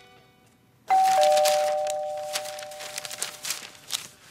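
Two-tone ding-dong door chime rings once about a second in, a higher note then a lower one, both ringing on and fading over about two seconds. Newspaper pages rustle as it is put down.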